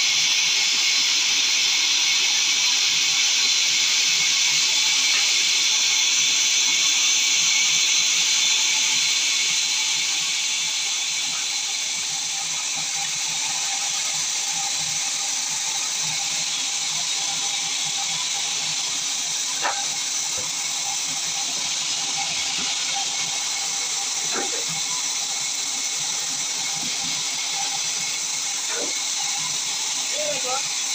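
Sawmill band saw running with a steady high hiss, which drops a little in level about a third of the way in; a few faint knocks in the second half.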